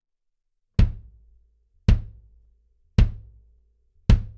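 Acoustic kick drum with a towel inside pressed against both the batter and resonant heads, struck three times about a second apart. Each hit dies away within about half a second, with less sustain, while the heads stay open enough to keep their tone.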